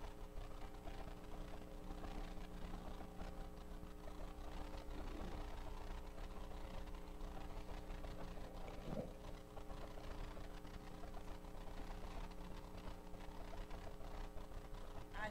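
Quiet room tone with a steady low hum of several held tones, and one short faint voice-like sound about nine seconds in.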